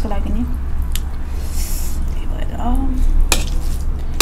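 Eating sounds: a metal spoon clinking and scraping on a brass plate and rice being squished as it is mixed by hand, with one sharp clink about three seconds in.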